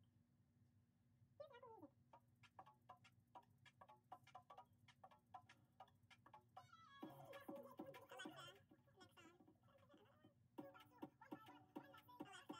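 Near silence over a steady low hum: faint crackling clicks of fingers pulling apart twisted natural hair. A faint call falls in pitch about a second and a half in, and a louder wavering pitched sound comes from about 7 to 8.5 s and again near the end.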